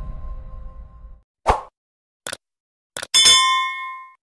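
Intro music fading out, then a few sharp clicks and a bell-like ding about three seconds in that rings and dies away: the sound effect of a subscribe-button and notification-bell animation.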